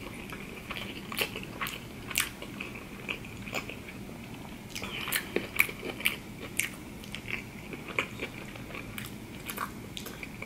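Close-miked chewing of a mouthful of sushi roll: irregular wet mouth clicks and smacks, one to three a second, the sharpest a little past halfway.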